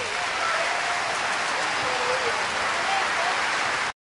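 Concert audience applauding after a song ends, with a few voices calling out over the clapping; it cuts off abruptly near the end.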